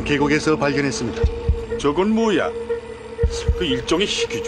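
Horror film soundtrack: a steady hum with wavering tones rising and falling over it, and two pairs of short low thumps, one pair about a second in and one near the end.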